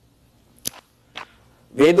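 A short, sharp click in a pause between a man's words, then a fainter click; his speech resumes near the end.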